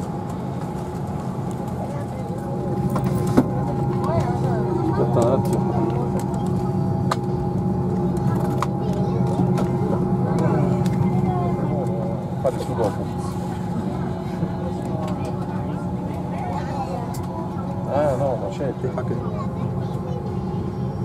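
Steady hum of an airliner cabin's air system with two held tones, under the chatter of boarding passengers. A single sharp knock about three seconds in.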